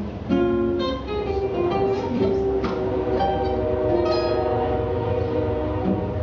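Solo acoustic guitar playing a jazz standard, with plucked notes and chords, over the steady low rumble of a train going by.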